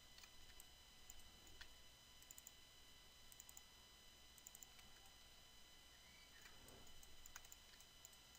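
Near silence with faint, scattered clicks of a computer mouse and keyboard as polygon edges are selected and deleted.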